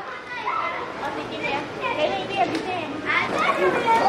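Children's voices talking and calling out, fairly faint, over steady background noise.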